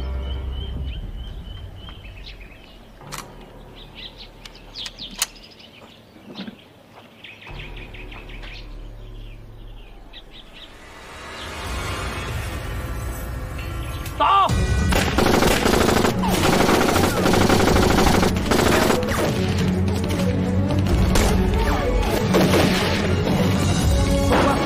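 Film soundtrack of an ambush: quiet woodland with bird chirps and a few sharp cracks, then a rising swell and, about halfway through, a sudden outbreak of sustained heavy gunfire, machine guns among it, over dramatic music.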